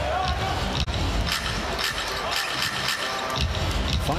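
Basketball arena sound during live play: crowd noise with music playing over the arena speakers, and many short sharp squeaks and knocks from the court.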